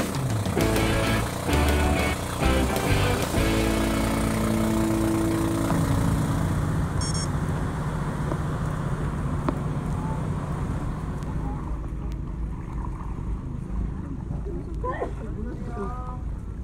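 Outrigger boat's engine running steadily with a low, even hum, with music over the first few seconds.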